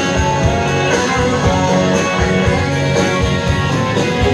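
Live country band playing an instrumental passage with steady drums, electric and acoustic guitars, and fiddle.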